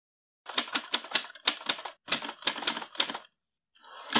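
Typewriter keys clacking in a quick run of sharp strikes, about four or five a second, with short pauses between bursts. The run starts about half a second in and stops a little after three seconds.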